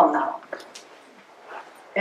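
A woman's voice says one word, then a pause of quiet room tone in a small hall.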